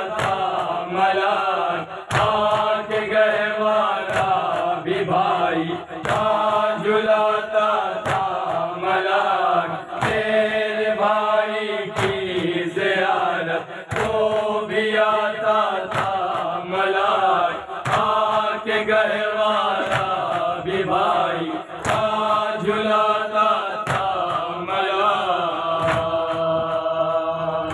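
A group of men chanting a noha, a Shia mourning lament in Urdu, together in a rhythmic refrain. Sharp chest-beating strikes (matam) keep time about every two seconds.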